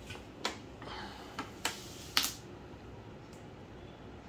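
A thin plastic water bottle crackling and clicking as it is handled and passed into a toddler's hands: four sharp clicks over about two seconds, the loudest a little after two seconds in, then quiet room tone.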